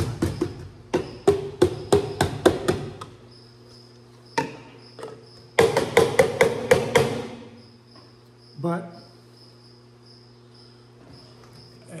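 A run of sharp knocks, roughly three or four a second for about three seconds, then a second quick flurry a couple of seconds later. These are a container being tapped to knock and settle a sample of bees down into a graduated jar, so they can be counted by volume.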